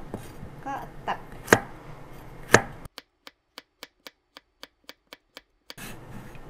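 Kitchen knife slicing a burdock (gobo) root on a plastic cutting board: a few hard knocks of the blade in the first three seconds, then a quick, even run of chopping strokes about four a second until near the end.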